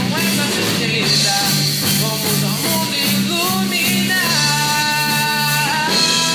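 A pop-rock band playing live: voices singing a melody in Portuguese over electric guitars, bass guitar and drum kit. A long held note comes in the second half.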